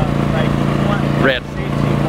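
Portable generator running with a steady low hum.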